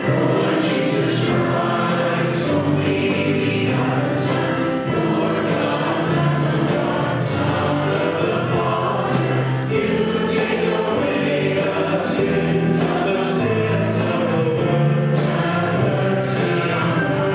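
A choir singing a hymn, continuous and steady.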